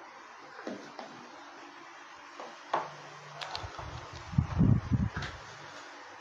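Things being handled on a wooden desk as a whiteboard eraser is set down and a marker picked up: a few light clicks, then a short cluster of dull knocks about four and a half seconds in, the loudest sound.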